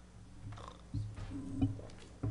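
Steady low electrical hum on the meeting room's microphone system, with a couple of soft knocks about a second in and again shortly after as the podium microphone and papers are handled.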